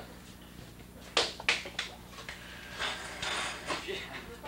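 Three sharp taps in quick succession a little over a second in, then a brief rustle of movement near the end.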